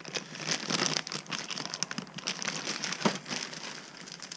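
Clear plastic bag crinkling and rustling in irregular bursts as it is handled, with one sharper knock about three seconds in.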